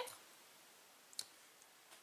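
Near silence: room tone, with one short click a little over a second in.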